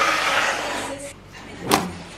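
A cardboard pizza box being slid across a marble countertop, a scraping hiss for about a second, then a single sharp knock of cardboard near the end.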